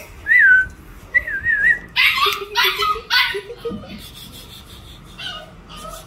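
Fluffy Pembroke Welsh Corgi puppy vocalising: two short, high, wavering whines, then three short loud yips about two seconds in.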